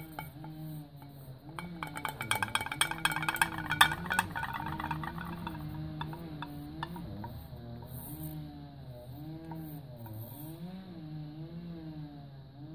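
A woman humming a slow, wandering tune. From about a second and a half in, a flurry of rapid scraping clicks comes from a wooden stick scraping acrylic paint out of a small metal cup, loudest around four seconds in.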